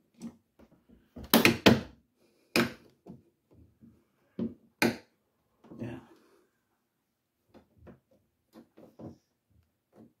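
Hard plastic clicks and knocks from the interior back panel and fan cover of a Beko fridge-freezer being pressed and snapped into place: a loud cluster of clicks about a second and a half in, sharp single knocks near three and five seconds, then a few faint taps.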